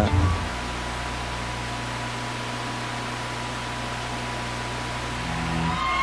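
Steady hiss with a low electrical hum and a faint high tone held at one level, swelling slightly just before the end.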